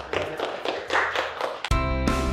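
A few people clapping by hand, irregular claps, then background music starts abruptly near the end.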